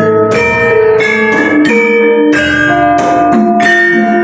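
Javanese gamelan playing: bronze keyed metallophones (saron) struck note by note in a steady melody, each note ringing on into the next, with deep strokes underneath about once a second.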